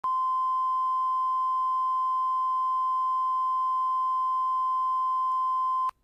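Broadcast test tone played with colour bars at the head of a tape: one steady, loud pure tone that cuts off suddenly just before the end.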